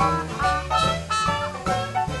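Live traditional jazz band playing an instrumental chorus in swing time, with piano and horns over bass and rhythm.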